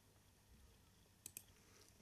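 Near silence: room tone, with two faint clicks a little past the middle.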